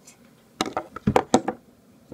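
Handling noise from a camera being picked up and propped on a table: a quick run of about half a dozen sharp clicks and knocks, starting about half a second in and lasting about a second.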